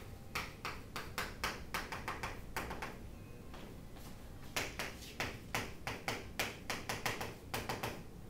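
Chalk writing on a chalkboard: quick taps and scrapes of the chalk strokes, in two runs with a pause of about a second and a half between them.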